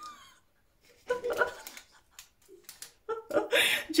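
Laughter in short bursts: a couple of soft laughs about a second in, then a louder, breathy laugh near the end.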